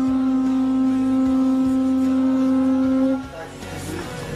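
A conch shell trumpet blown in one long, steady, unwavering note with a stack of overtones, cutting off a little after three seconds in.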